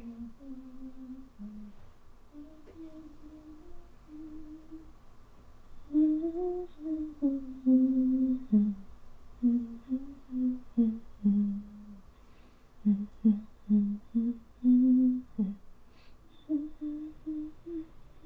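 A woman humming a slow, wordless tune to herself in held notes broken into short phrases: soft at first, louder from about six seconds in, then softer again near the end.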